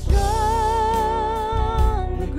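Live worship band playing and singing: a voice holds one long note with vibrato over strummed acoustic guitar and a steady low bass.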